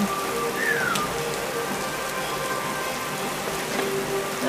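Thunderstorm rain falling steadily on wet pavement, an even hiss.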